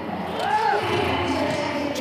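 Football match broadcast audio: steady stadium background noise, with a short drawn-out vocal sound from a commentator about half a second in.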